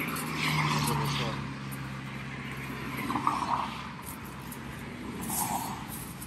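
A vehicle passing on the highway: its hum is loudest about half a second in and falls slowly in pitch as it goes by. Plastic bags rustle.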